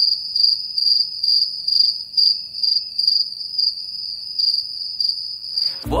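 Cricket chirping sound effect: a steady high trill pulsing about twice a second. It cuts off just before speech returns.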